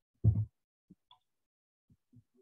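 A single dull thump close to the microphone about a quarter second in, followed by a couple of faint clicks.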